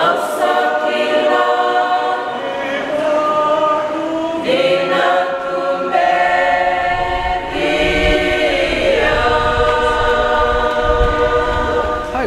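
A choir singing slowly in long held chords that change every second or two.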